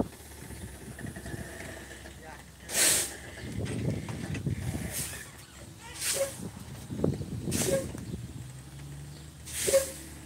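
Semi truck air brakes hissing in five short bursts of escaping air, the loudest about three seconds in and just before the end, on a truck whose brakes have just been repaired.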